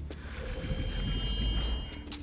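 Animated-film soundtrack effects: a deep rumble with a high, ringing shimmer of steady tones on top. The rumble drops away near the end.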